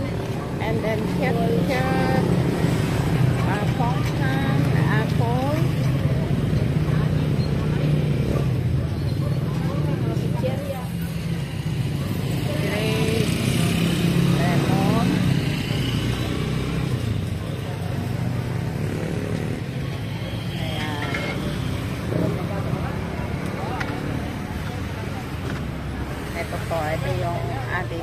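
An engine running steadily with a low hum, under scattered voices talking.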